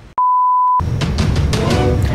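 A single steady electronic bleep tone, a pure high beep lasting under a second with dead silence before it, cut off abruptly; music with a steady beat starts straight after.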